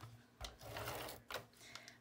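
Handheld ATG tape gun laying a strip of double-sided adhesive tape on cardboard, its tape-feed mechanism whirring faintly for about a second. A few light clicks come from the gun.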